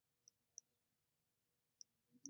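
Faint clicks of a computer mouse button, three clear ones and a couple of lighter ticks, as Photoshop's layer-style sliders are dragged.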